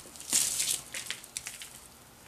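Dry potting soil crunching and rustling as fingers press it down into a plastic pot, with a burst of crackle about a third of a second in, then a few scattered small crackles.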